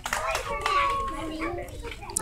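Young children's voices chattering in a group, softer than the adult speech around it.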